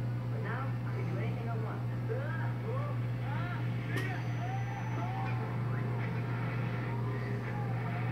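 Dialogue from a wall-mounted television heard across the room over a steady low hum, with a single sharp click about four seconds in.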